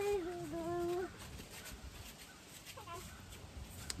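A child's voice holding a long drawn-out sung or called note that sinks a little and wavers before stopping about a second in, followed by a brief faint call near the end.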